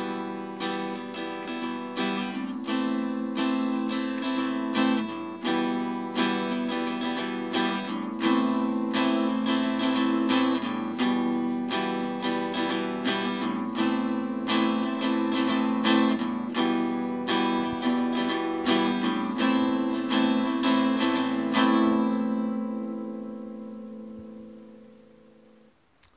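Hollow-body archtop guitar strummed in a steady rhythm, alternating E minor and A minor chords. The last chord rings on and fades out near the end.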